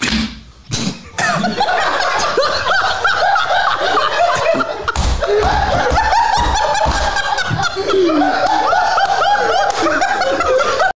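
A man laughing hard and without a break, starting about a second in after a couple of short bursts of sound.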